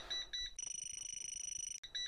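GVDA GD156 gas leak detector's built-in alarm beeping quickly, several short high beeps a second, set off by butane from a lighter at high sensitivity. About half a second in, the beeps merge into a steady higher tone lasting just over a second, then the quick beeping resumes.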